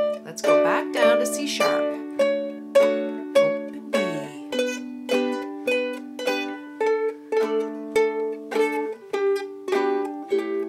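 Ukuleles picking single notes of the D major scale, each note plucked four times and stepping down the scale, with lower notes ringing on underneath.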